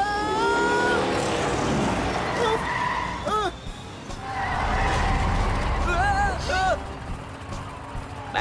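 Cartoon sound effects of road traffic: cars rushing past with tyre skidding, and a low engine rumble that is loudest about halfway through. Short vocal cries and background music are mixed in.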